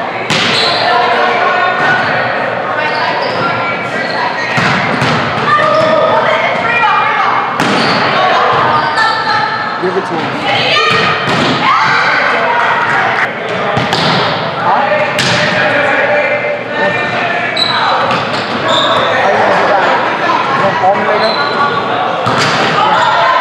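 Volleyball rally in a large, echoing gym hall: a series of sharp thuds from the ball being struck by hands and arms and hitting the hardwood floor, spaced irregularly through the play.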